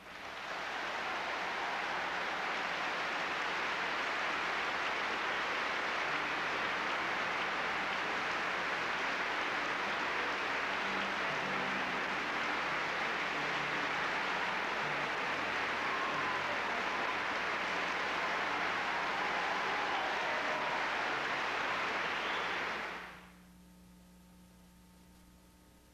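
Large audience applauding, dense steady clapping that builds up in the first second and cuts off sharply about a second before the end.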